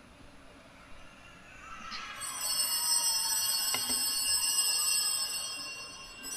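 Bell-like chiming: several high, steady ringing tones come in about two seconds in, swell and hold, then ease off near the end.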